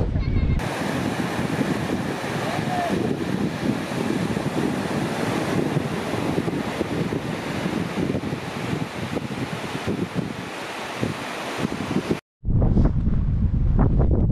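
Surf washing onto a wide sandy beach, a steady roar of breaking waves mixed with wind on the microphone; it cuts off suddenly near the end.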